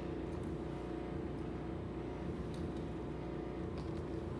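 A steady low mechanical hum with a few faint steady tones.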